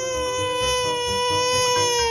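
A baby crying: one long, held wail on a steady pitch that begins just before and carries on throughout.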